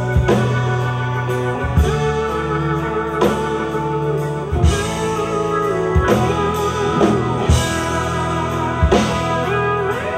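Live country band playing a slow instrumental intro: lap steel guitar with sliding notes over acoustic and electric guitars, with a drum hit about every second and a half.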